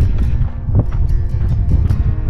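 Wind buffeting the microphone, a loud low rumble, under soft background music.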